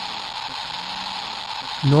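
Geiger counter's speaker giving a steady, dense crackle that sounds like static: its Geiger–Müller tube is registering around 240 counts a second, a radiation level of about 120 microsieverts per hour.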